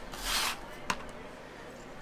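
A brief rustle, then a single light click about a second in, then quiet room tone: small handling noises at a work table.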